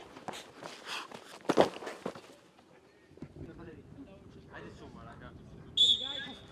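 Sharp thuds of a football being struck and handled in a goalkeeper drill, with faint shouts on a training pitch. Near the end, a single loud sustained whistle blast.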